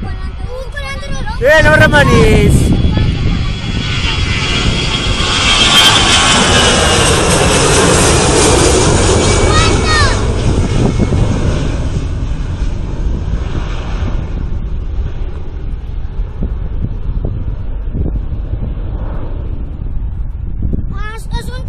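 Twin-engine jet airliner at takeoff power, climbing away. The jet noise swells to its loudest several seconds in, with a high whine falling in pitch as the aircraft passes, then fades off. Brief shouted voices cut in near the start and about halfway.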